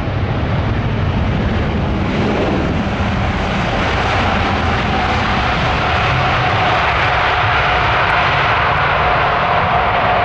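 Qatar Airways Airbus A380's four jet engines running, loud and steady, as the airliner rolls down the runway just after landing with spoilers up. A steady whine comes in about four seconds in.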